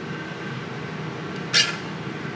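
Steady low hum of kitchen ventilation or air conditioning, with one short, sharp, high-pitched squeak about one and a half seconds in.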